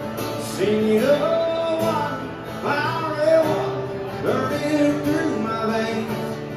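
Live country song played on strummed acoustic guitars, with a man singing over them.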